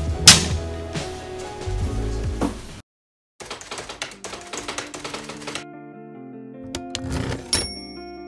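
Background music that cuts out about three seconds in, followed by a rapid clatter of typewriter keys, the sound effect for on-screen text being typed out. Quiet, sparse music notes then come in with a few more sharp key clicks.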